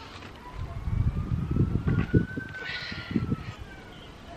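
Gusty wind buffeting the microphone in uneven low rumbles, with a faint, long high tone slowly rising in pitch behind it.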